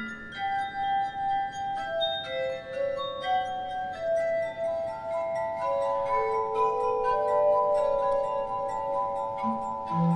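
Glass harp of rubbed, water-tuned wine glasses and a verrophone of tuned glass tubes playing a classical melody in sustained, ringing tones, several notes overlapping. Lower notes grow stronger about halfway through.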